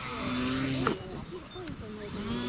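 Radio-controlled aerobatic model plane's motor and propeller running with a steady drone, then a sharp impact about a second in as the plane hits the ground, after which the motor sound stops.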